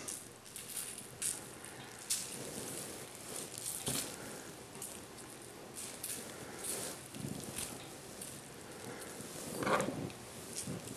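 Faint, scattered rustling and crinkling of plastic wrap, with soft ticks, as raw pheasant pieces are seasoned with seasoning salt and moved about on it.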